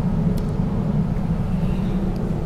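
A steady low rumble of background noise, even throughout, with a faint steady hum above it.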